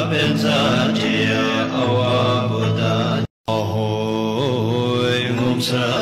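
Tibetan Buddhist prayer chant with a steady drone under a slow sung melody. It cuts out completely for a moment about halfway through.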